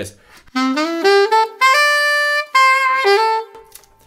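Selmer Mark VI alto saxophone playing a short R&B lick: a quick rising run of notes with grace notes up to a held high note, then a few falling notes and a last lower note that cuts off about three and a half seconds in.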